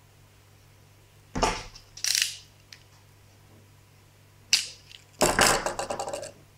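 Hands handling wiring and small objects on a tabletop, in short rustling bursts: about a second and a half in, at two seconds, near four and a half seconds, and a longer run in the last second. The first and last bursts each open with a soft knock.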